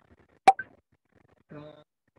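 A single sharp click about half a second in, then a man's hesitant 'uh' near the end.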